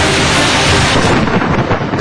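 Thunder with heavy rain: a loud, dense rushing rumble that thins out after about a second. Background music runs underneath.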